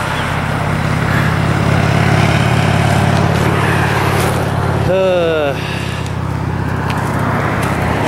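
Road traffic: cars going by on a highway, with a steady low hum under the tyre noise. A brief voice-like call cuts through about five seconds in.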